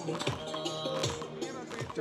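Upbeat dance music with a steady beat and a melody line, played for public square dancing.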